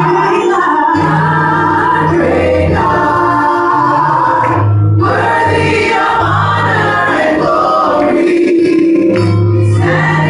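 Gospel praise team of three women and a man singing together into handheld microphones, with sustained low bass notes shifting every second or two underneath.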